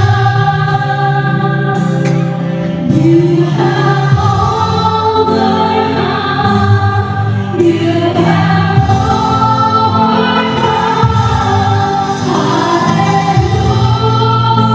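Live Christian worship music: several voices sing long held notes over an electric bass guitar.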